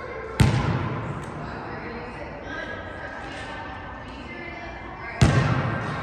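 Basketball striking a hard gym floor twice, about five seconds apart, each thud echoing in the large hall.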